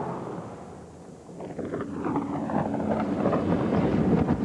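Saab 9-5 wagon driving fast on a dirt road: rushing wind and road noise that dip about a second in and build again, with a falling whoosh and a steady engine note coming in.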